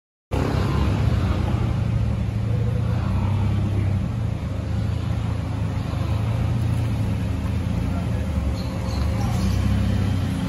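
Toyota Vios 1500cc VVT-i engine running at low revs through an aftermarket racing dual-muffler exhaust as the car rolls slowly: a steady, low-pitched exhaust note.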